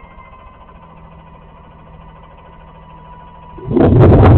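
Garbage truck's diesel engine idling steadily in the background. Near the end a sudden loud rumble with clattering starts as a plastic wheeled recycling cart is rolled across the pavement close by.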